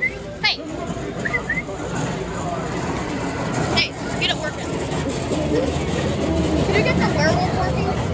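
Indistinct voices over a steady low rumble, with two short sharp clicks, one about half a second in and one just before the four-second mark.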